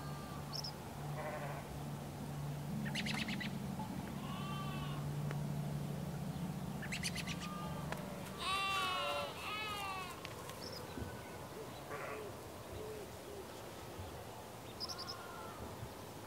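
Farm ambience: a sheep or goat bleats once, a wavering call a little past halfway, among scattered short bird chirps. Under them a low steady hum stops about halfway.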